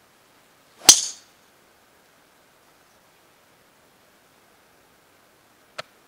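Golf driver's club head striking a teed golf ball on a tee shot: one sharp crack with a brief ring about a second in. A short faint click follows near the end.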